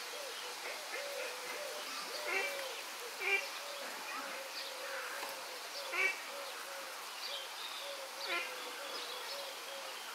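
Steady series of soft hooting notes, about three a second, with a few louder higher chirps scattered through; in a lar gibbon enclosure, typical of lar gibbon hoo calls.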